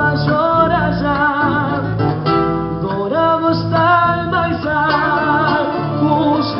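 Live band: a male singer singing held, wavering notes into a microphone over guitar and drums.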